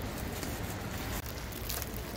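Plastic packaging crinkling and rustling as bags of rice are pulled from a shrink-wrapped stack, with a couple of short rustles over a steady low background rumble.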